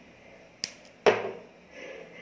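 Black electrical tape pulled off its roll and wrapped around a lithium-ion cell: a faint click, then a short sharp pull about a second in that fades quickly.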